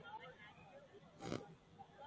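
Faint, distant voices of people talking in scattered groups, with one short burst of noise about a second and a quarter in.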